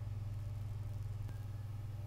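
A steady low hum of background room tone, unchanging throughout, with nothing else happening.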